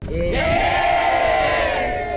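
A large group of young people shouting together in one long, held group cheer, starting a moment after the beginning.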